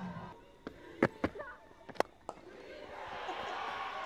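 Cricket bat striking the ball for a lofted shot, one of a few sharp knocks, then crowd noise swelling through the last second or so as the ball carries over the fielders.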